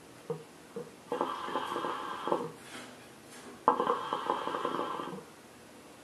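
Hookah water bubbling in the base as smoke is drawn through the hose, in two draws of about a second and a half each.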